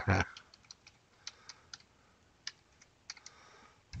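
Typing on a computer keyboard: a string of separate, unevenly spaced keystrokes as a terminal command is entered. A spoken word trails off at the very start.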